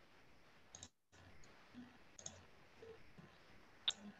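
Near silence on an open video-call line: faint hiss that drops out briefly about a second in, with a few faint clicks, the sharpest just before the end.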